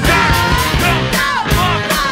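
A live rock band with a horn section playing loud: a steady drum beat under bass, guitars, keys, trumpets and baritone sax, with a male singer's vocals.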